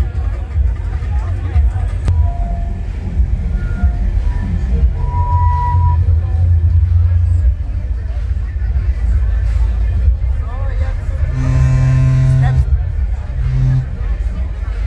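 Crowd chatter mixed with music from a live band playing through a sound system, over a heavy low rumble. A strong sustained low note sounds briefly near the end.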